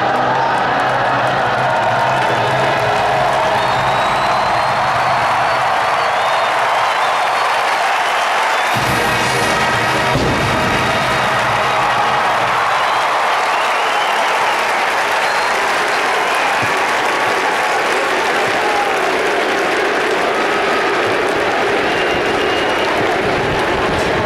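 Marching band brass holding out a final sustained chord, which breaks off about nine seconds in, leaving a large stadium crowd cheering and applauding.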